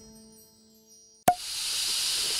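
The last held notes of a jingle fade away to near silence. About a second and a quarter in, a sharp hit sounds, followed by a steady airy whoosh: the sound effect opening the animated logo sting.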